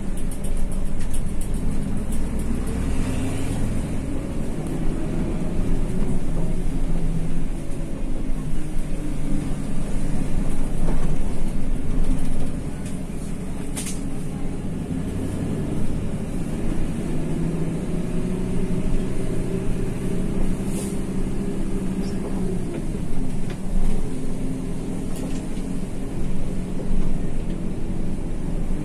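Intercity bus engine running under way, heard from inside the driver's cab, its note rising and falling with the throttle and easing off about halfway through. A few sharp clicks or rattles from the cab come through now and then.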